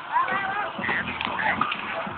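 Children's voices chattering and calling out, with a few short clatters from inline skate wheels on paving, in a thin, muffled old phone recording.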